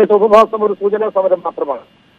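A man talking over a telephone line, his voice thin and narrow like a phone call, stopping briefly near the end.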